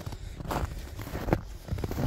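Footsteps on snow strewn with twigs and brush, a few uneven steps, the sharpest about a second and a half in.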